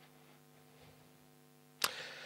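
A steady, faint electrical hum with almost nothing else, then a single sharp click or knock near the end.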